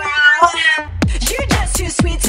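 G-house track played from vinyl: a long, wavering, pitched sample with the drums dropped out, then the kick-drum beat comes back in about a second in.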